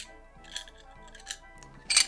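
Soft background music with a few light metallic clinks from metal bar tools being handled, among them a cast-aluminium hand citrus juicer. The sharpest clink comes near the end.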